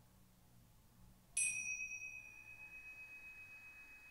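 A pair of tingsha cymbals struck together once, about a second and a half in. They give one clear, high ring that fades slowly with a gentle wavering beat and is still sounding at the end, marking the close of the practice.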